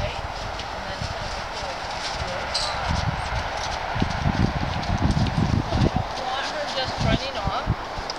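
Horse hooves thudding on arena sand as the mare moves around the handler on a lead rope. A run of quick, irregular thuds starts a few seconds in and lasts until near the end.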